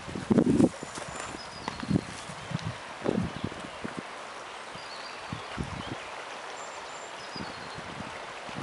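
Irregular footsteps and thumps on dry leaf litter, loudest in the first second and again about three seconds in, over the steady rush of a river. A few faint, short high chirps come through.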